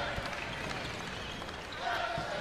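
Basketball game ambience in an indoor arena: a steady crowd murmur with a basketball being dribbled on the hardwood court.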